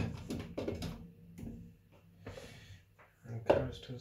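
Soft handling sounds of halved baby potatoes being set by hand into a metal roasting tray, between snatches of a man's speech; the speech comes back loudest near the end.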